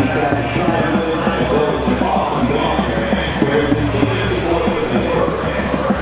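High school marching band playing a passage of sustained chords at a steady level, heard across an open football stadium.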